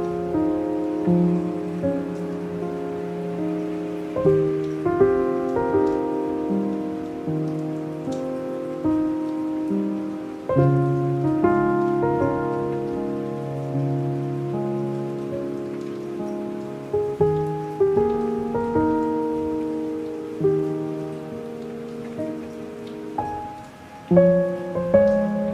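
Slow, soft piano music with chords that strike and fade, over a steady patter of light rain.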